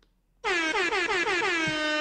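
Air horn sound effect: a loud pitched blast starting about half a second in, wavering rapidly in pitch at first and then holding one steady note.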